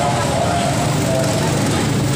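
Steady busy-street ambience: many people's voices blended with traffic noise.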